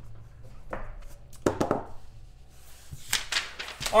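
Light handling taps and knocks as a printed paper sheet is picked up off a tabletop and handled: a few scattered taps, one sharper knock about a second and a half in, and a louder cluster near the end.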